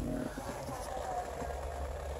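Quiet car-cabin background: a low steady hum under faint noise, with no distinct event.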